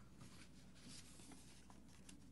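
Near silence with faint rustling and small ticks of sheets of paper being handled as pages that stick together are pulled apart.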